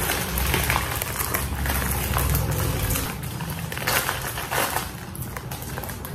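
A thin plastic mailer bag crinkling and rustling as hands pull and tear it open, with background music underneath.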